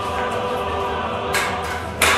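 Background music with a choir holding sustained notes, and a short whoosh about one and a half seconds in as a pole is swung through the air like a lightsaber.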